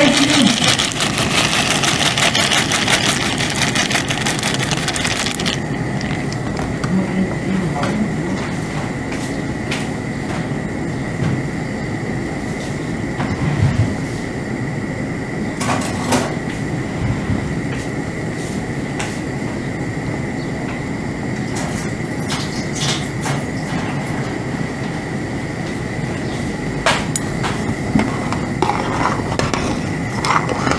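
Dry pasta, lentils and peas poured from a plastic bag into a large stainless-steel pot of boiling water, a rattling, hissing pour for the first five seconds or so. Then the pot boils steadily over a gas burner, a low rumble with a few light knocks.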